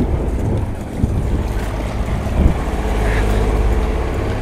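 Wind buffeting the microphone over the steady low drone of a sailboat's engine under way, with the wash of water along the hull.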